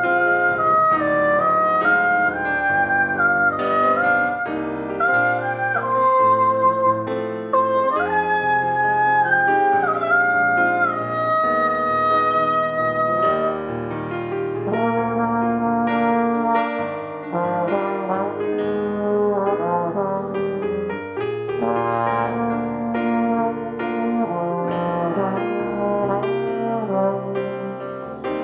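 A trumpet plays a hymn melody over a Nord Stage 3 keyboard playing piano accompaniment. About halfway through, the trumpet stops and a trombone takes up the melody in a lower register.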